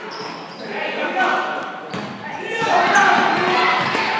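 Basketball bouncing on a hardwood gym floor during live play, mixed with players and spectators calling out. The large hall adds echo, and the noise grows louder in the second half.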